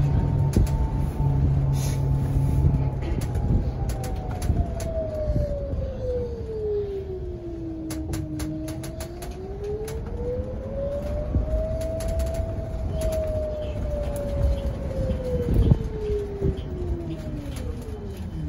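Electric trolleybus traction motor whining under the ride noise inside the bus. Its single tone sinks as the bus slows through the first half, climbs again as it picks up speed, then falls steadily as it slows near the end, with a few rattles and clicks along the way.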